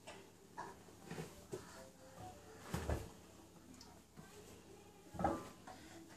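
A few soft knocks and handling noises as clothes are pulled out of a front-loading washer into a plastic laundry basket, the loudest just after five seconds in.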